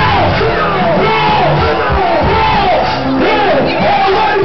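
Live R&B music played loud over a PA, with a crowd of fans screaming and cheering over it.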